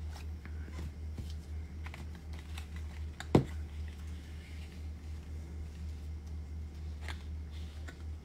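Light handling clicks and rustles from a small boxed larimar sphere and its plastic bag being moved by hand, with one sharp knock about three and a half seconds in, over a steady low hum.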